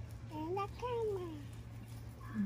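A young child's voice making two short wordless gliding vocal sounds, rising then falling in pitch, over a steady low hum.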